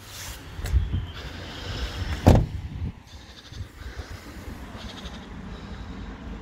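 Handling and footstep noise with a low rumble, and a single sharp thump about two seconds in as the truck's cab door shuts.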